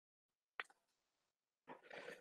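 Near silence, with one faint click a little over half a second in.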